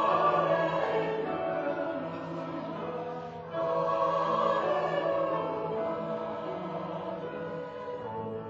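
A church choir sings an anthem in sustained, full chords. The phrase falls away and a new, louder phrase comes in about three and a half seconds in.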